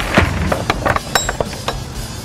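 A quick run of sharp metal clicks and clinks, about eight in under two seconds, one near the middle with a brief ring: a truck's pull-out loading ramp's locking mechanism being worked by hand.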